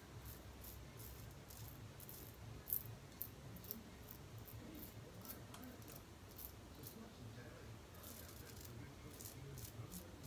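Merkur 34C double-edge safety razor with a new Polsilver blade scraping through lathered stubble on the neck: faint, crisp rasping strokes, two or three a second. A single louder tap comes near three seconds in.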